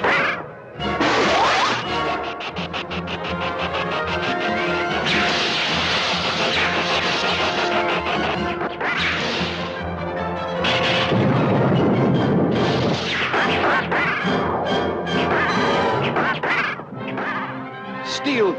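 Cartoon action music mixed with sound effects of energy blasts and crashes: a run of rapid ticking early on, a loud hissing burst in the middle, and a heavy rushing crash a little later.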